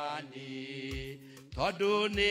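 A man singing a slow hymn in Kikuyu, holding long notes softly, then sliding up into a louder note near the end.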